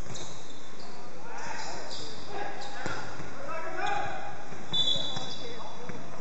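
A basketball bouncing on a hardwood gym floor during play, a few separate bounces in a reverberant hall, with a brief high squeak about five seconds in.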